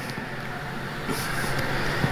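A pause in speech: the steady background noise of a large hall, an even hiss with no distinct events, rising slightly toward the end.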